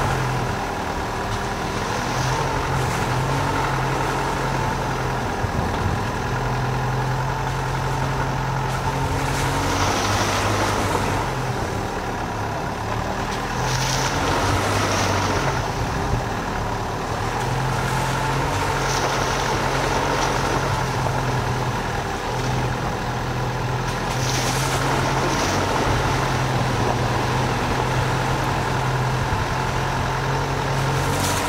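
Dacia Duster's engine running at low speed over a rough, muddy track, a steady low drone that fades and swells every few seconds as the throttle changes. A few brief rushing surges come from the tyres going through puddles.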